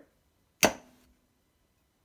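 A single sharp clink about half a second in as a lid is set into the neck of a Bodum pour-over's glass carafe, with a short ring after.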